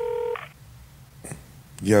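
A steady electronic telephone-line tone, one held pitch with overtones, that cuts off abruptly about a third of a second in. It is followed by a quiet stretch with a faint click, and a man's voice says "Yo" near the end.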